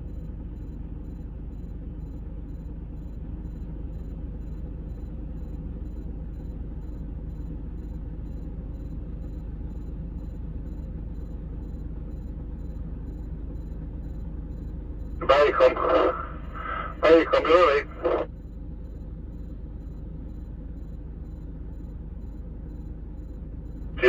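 A steady low engine rumble that holds level throughout, heard from inside a vehicle, with a voice speaking briefly about 15 seconds in.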